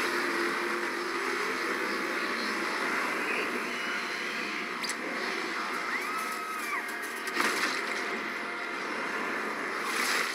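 Animated cartoon soundtrack: music under dense, noisy sound effects, with a sharp click about five seconds in and another near seven and a half seconds.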